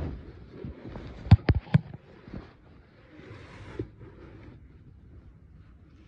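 Close handling noise: rustling, with three sharp knocks in quick succession about a second and a half in, then fainter rustling.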